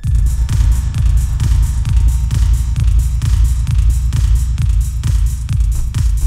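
Electronic synthesizer music: a heavy, pulsing bass and a steady beat kick in suddenly at the start and keep going.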